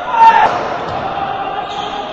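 Sounds of an indoor basketball game: a short loud shout about a quarter second in, then voices around the court and the ball bouncing on the floor.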